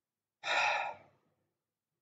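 A man's audible breath through the microphone, a single breathy sound about half a second long, taken in a pause between spoken phrases.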